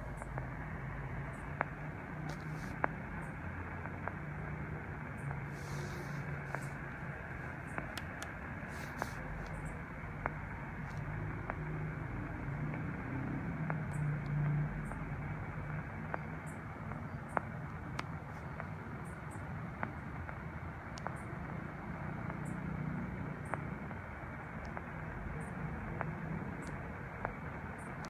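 Tecsun PL-660 shortwave receiver tuned to 27.105 MHz (CB channel 12) in AM, putting out steady band-limited static hiss through its speaker, with scattered faint clicks and crackles.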